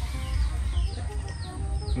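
A small bird chirping repeatedly, short high falling notes about twice a second, over quiet background music.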